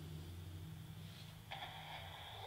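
Quiet room tone: a faint low hum, joined about one and a half seconds in by a faint steady higher-pitched sound.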